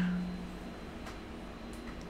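Faint light clicks of a laptop motherboard being lifted out of its chassis and handled, over quiet room noise. A faint steady hum fades out in the first second.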